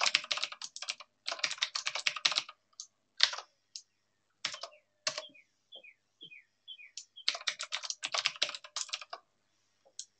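Typing on a computer keyboard: quick runs of keystrokes broken by pauses with a few single key presses, and a longer run near the end.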